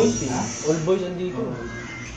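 A person's voice talking briefly, trailing off after about a second and a half.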